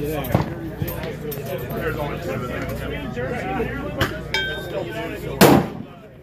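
A few sharp gunshots from the shooting range, the loudest about five and a half seconds in, heard over people talking nearby.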